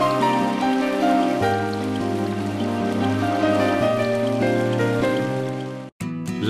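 Slow, soft background music of held chords that change every second or so, with a light rain-like hiss over it. It cuts off abruptly just before the end.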